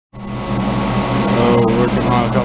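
Steady machine hum: a low drone with a faint high whine over a hiss. A man's voice starts near the end.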